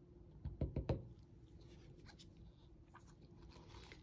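A quick cluster of three or four light knocks from handling plastic paint cups, about half a second to a second in, then only a faint steady room hum.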